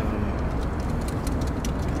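Steady low motor-vehicle rumble with faint light ticks.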